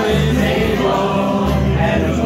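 Live band music with several voices singing together over steady low bass notes.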